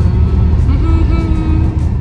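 Steady low rumble of a car's engine and tyres heard from inside the cabin while driving, with a faint held tone of background music coming in about halfway through.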